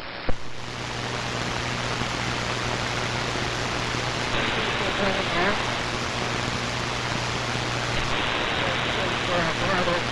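Shortwave receiver static: a steady hiss of band noise with a low hum under it, following a click just after the start. From about halfway a weak, wavering voice-like signal comes faintly through the noise.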